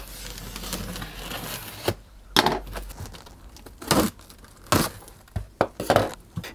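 Packing tape on a cardboard box being slit with a blade in a continuous scratchy run of about two seconds, then a handful of sharp cardboard rustles and knocks as the flaps are pulled open.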